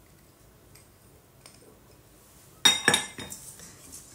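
A kitchen utensil knocking against a stainless steel saucepan: a quick cluster of three or four sharp metallic clinks with a short ring, about two-thirds of the way in, after a quiet start.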